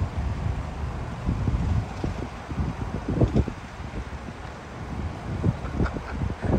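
Wind buffeting a phone microphone outdoors, an uneven low rumble that swells and drops in gusts.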